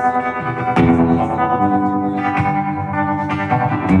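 Godin hollow-body electric guitar strummed solo through an amp, chords ringing out with no vocals, changing chord about a second and a half in.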